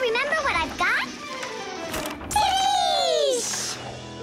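High-pitched cartoon children's voices making wordless exclamations, with one long falling cry a little past halfway, over background music.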